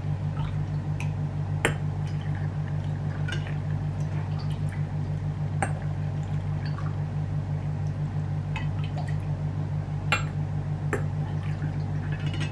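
Pickling vinegar ladled from a stainless steel pot into glass jars of sliced young ginger, pouring and dripping, with a few sharp clinks of the ladle on glass and metal. A steady low hum sits underneath.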